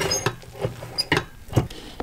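A spatula scraping and knocking against a rice cooker's inner pot while scooping out cooked rice, with about five sharp knocks and two short high pings.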